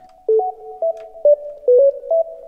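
Software synthesizer playing a counter melody of short, pure-toned notes, about three notes a second.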